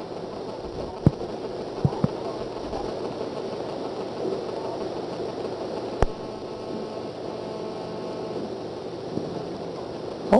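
Steady background hum of the room, broken by a few short sharp clicks: two about a second and two seconds in, a third just after, and one more at about six seconds.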